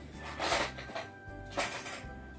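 Plastic toy blocks clattering into a plastic storage box in two short rattles, about half a second in and again near the end, over steady background music.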